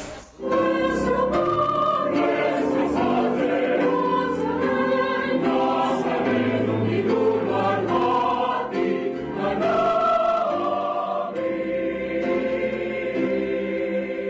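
Choral music: a choir singing slow, sustained notes in a solemn, hymn-like style, coming in about half a second in.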